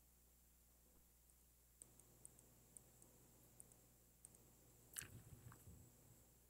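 Near silence with faint clicking from a laptop being worked, about a dozen light ticks, then a soft knock and rustle about five seconds in.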